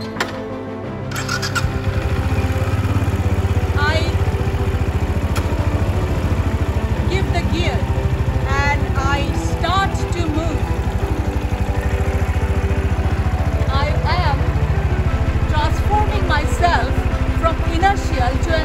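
A Benelli motorcycle engine started: it catches about a second in and then idles steadily.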